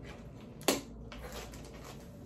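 Hands rummaging through snack packets in a cardboard box, with a faint rustle and one sharp click about two-thirds of a second in.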